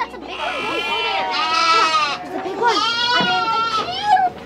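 Goats bleating: two long, wavering bleats, each well over a second long, one after the other.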